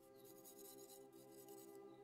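A wooden stick scraping grooves into a packed earth wall in repeated short strokes, faint, that stop near the end. Faint music with long held notes runs underneath.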